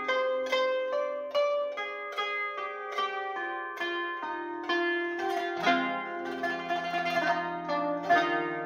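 Qanun, the Arabic plucked zither, playing a melody of plucked notes, about two to three a second, each ringing on. Lower notes join in about halfway through, thickening the sound.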